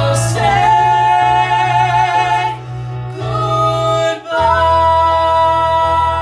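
A woman and a man singing a duet in long held notes with vibrato over an instrumental accompaniment, the harmony shifting to a new held chord after a short break about four seconds in.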